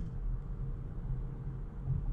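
Low, steady road and tyre rumble inside the cabin of a 2019 Nissan Leaf SL Plus electric car driving at town speed, with no engine sound: pretty quiet.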